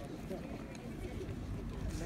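Faint, indistinct voices talking, over a steady low rumble.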